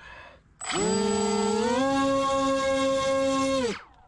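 Twin Turnigy 2826 2200 kV brushless motors spinning their propellers in a hand-held throttle test: a loud whine that comes in suddenly, steps up in pitch about a second later, holds steady, then winds down and stops shortly before the end.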